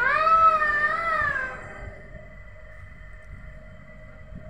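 A child's high voice holding a long, wavering note, a playful sung wail without words, that dies away a little under two seconds in. After it, only quiet room sound.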